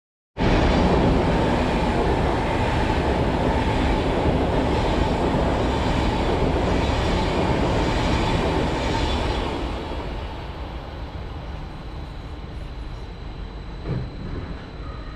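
SBB double-deck passenger train passing close by: a loud, steady rumble and rush of wheels on rails that starts abruptly and drops off about ten seconds in as the train clears, leaving a fainter rumble.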